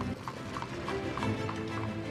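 A horse's hooves clip-clopping in an even rhythm over background music.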